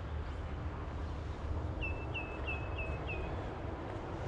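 A bird calls a quick series of five short notes, each slurring downward, about two seconds in, over a steady low rumble.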